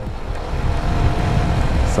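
Riding noise on a motorcycle at steady speed: wind rush over the microphone with the engine's low hum and tyre noise beneath, a faint steady tone in the middle.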